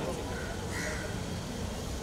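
Murmur and chatter of a large outdoor crowd, with two short bird calls in quick succession about half a second in.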